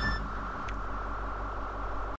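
The tail end of a punk rock track: the last notes die away in the first moment, leaving a steady low amplifier hum with faint noise.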